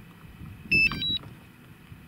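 Short electronic chime from the DJI Mavic drone's controller and app as they start up: a quick run of three or four high beeps at different pitches, ending on a higher note, about half a second long, a little under a second in.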